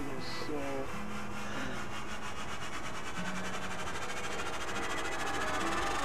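Steady low background hiss with a few faint held tones, growing slightly louder toward the end.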